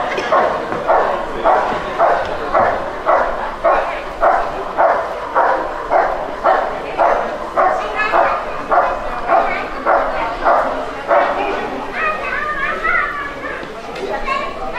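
A dog barking steadily at a helper in the blind, the bark-and-hold of a protection-sport routine: about two barks a second, stopping about eleven seconds in.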